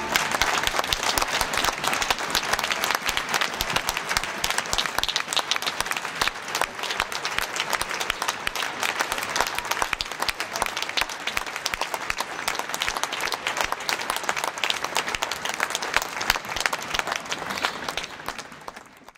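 Large audience applauding steadily, a dense mass of clapping.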